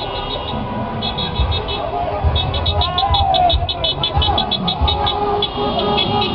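Car horns honking in a slow-moving motorcade, with runs of rapid, high-pitched electronic beeping, about five beeps a second, and a held horn note near the end, over the engines and low thuds of the passing cars.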